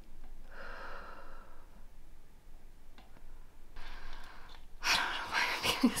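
A woman's audible breathing: two long breaths out, about a second in and about four seconds in, then louder, quicker breathy sounds near the end.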